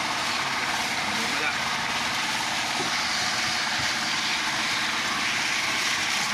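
Water splashing and churning steadily at the surface beside a boat, over the low, steady hum of the boat's engine running.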